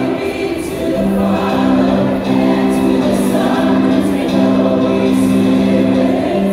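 A group of voices singing a slow worship song together, in long held notes that change about once a second.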